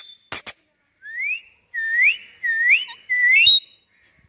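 A run of four short rising whistles, one about every half second, the last breaking into a brief shrill chirp; two sharp clicks come just before them.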